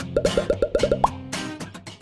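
Animation soundtrack: light background music with a quick run of about eight cartoon plop sound effects, each a short upward blip, the last one pitched higher.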